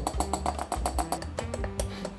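Background music with plucked guitar: a run of quick, even plucks over steady held notes.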